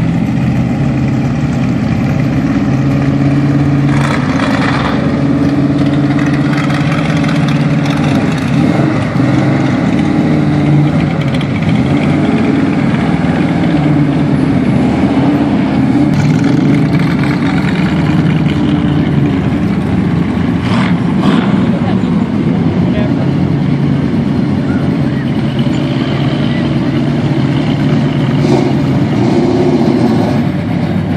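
Engines of classic cars and a vintage pickup rolling slowly past in a line, a steady low engine rumble throughout.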